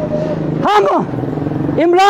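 A motor vehicle's engine running steadily in the street, a continuous low hum that carries through the pauses, under a man's short spoken phrase.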